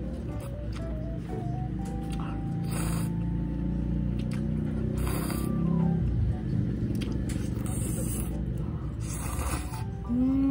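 Ramen noodles being slurped from a cup, about four short, noisy slurps a few seconds apart, over background music with a simple stepping melody.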